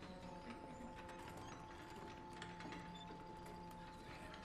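Faint, irregular clicks and creaks of people moving in a wooden lecture hall, over a quiet, steady drone of several held tones.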